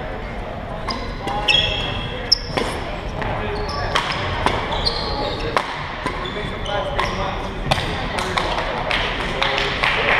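A badminton rally on a hardwood gym floor: a quick run of sharp smacks of racket strings on the shuttlecock, with short high squeaks of court shoes as the players move and lunge, over the murmur of watching spectators.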